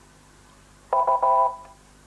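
Quiz-show electronic signal tone: a short chord of several steady pitches about a second in, held for about half a second and then fading away. It most likely marks that the time to answer has run out, since no player answers.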